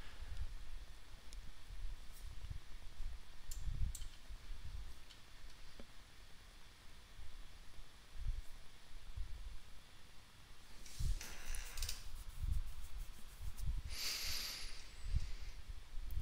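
Faint computer mouse clicks and small desk bumps. In the second half there are two short hissing breaths at a headset microphone.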